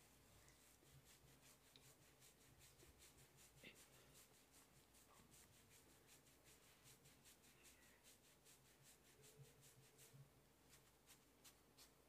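Fingers kneading and rubbing through coconut-oiled hair and scalp, making faint soft crackles about three times a second, with a short pause near the end.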